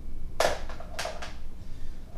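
Video game gunfire: two sharp shots about half a second apart, with a few fainter cracks after.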